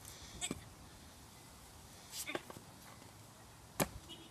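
Skateboard knocking against the sidewalk's curb edge: a few short knocks, the sharpest near the end.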